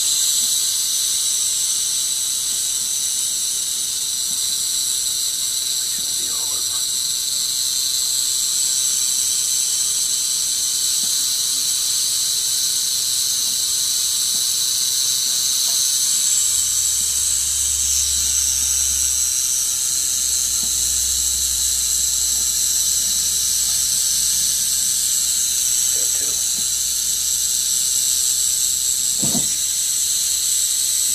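Eastern diamondback rattlesnake rattling its tail: a loud, steady, high dry buzz that goes on without a break.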